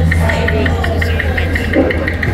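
Loud street-procession din: music over loudspeakers with a deep steady hum for the first second or so and a fast, even ticking beat, over crowd noise and scattered sharp pops.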